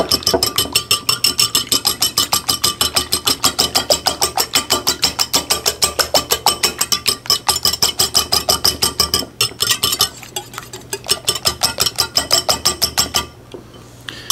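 Steel wire balloon whisk beating egg whites in a white ceramic bowl: fast, even clinking of the wires against the bowl, about five strokes a second, with the bowl ringing. It falters briefly about nine seconds in and stops about a second before the end.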